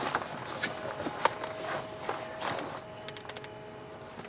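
Umbrella-style windshield sunshade being opened and pushed into place: its reflective fabric rustles and its frame gives off light clicks, with a quick run of small ticks near the end.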